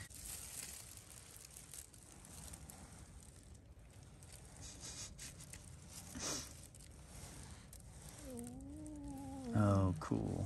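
Faint handling sounds of fingers wrapping thread and cord around a small fishing hook. Near the end a person hums a wavering note, followed by a short, louder voiced sound that falls in pitch.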